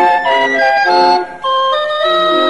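Chilean street barrel organ (organillo) playing a lively tune: chords of steady reedy tones change several times a second, with a brief break between phrases about one and a half seconds in.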